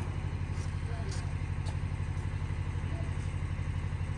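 An engine idling steadily with a low, even pulse, and faint ticks about every half second.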